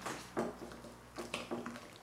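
A hand mixing wet wholemeal flour and water into a dough in a glass bowl: a few soft, irregular squelches and light taps against the glass.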